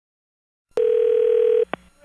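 A single steady telephone tone heard down the phone line, starting about a second in and lasting under a second, then a click as the call is answered.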